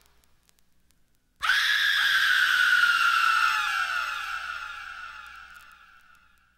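Vinyl record playing on a turntable as its track ends: about a second and a half of faint surface crackle, then a sudden high sound in several pitched layers. It slides slowly down in pitch and fades out over about four seconds.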